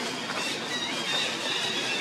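A steady, high-pitched insect drone over an even outdoor hiss.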